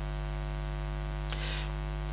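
Steady electrical mains hum with a buzzy edge from the microphone and sound system, with a brief soft hiss about a second and a half in.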